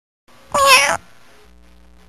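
A cat meowing once, a short call about half a second in.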